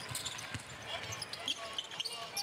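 Basketball being dribbled on a hardwood court, a run of short bounces, with faint voices and no crowd noise around it.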